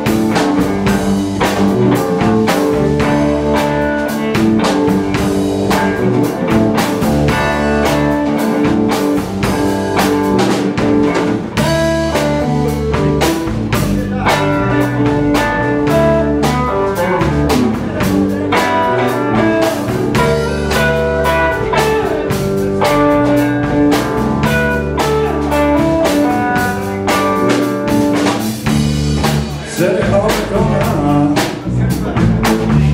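Live blues band playing an instrumental stretch: electric guitar over electric bass and a drum kit, with no singing.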